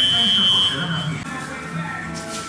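A high, steady electronic tone like a buzzer, held for about a second and a half and stopping about a second in, over a voice or music underneath.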